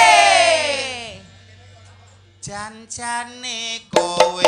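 A Javanese sinden holds a long sung note into a microphone. It slides down in pitch and fades out about a second in. After a short pause, a lower voice delivers a brief phrase of broken notes, and drum strikes come in right at the end.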